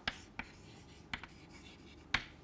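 Chalk writing on a blackboard: a few short, faint taps and scrapes of the chalk as it draws and writes.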